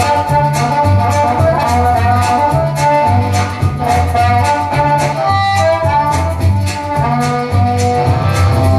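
Amplified harmonica played with cupped hands around a handheld microphone: a melody of held notes over a low, rhythmic pulse.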